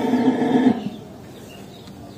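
A cow lowing: one short, steady moo in the first second, then only quiet farmyard background.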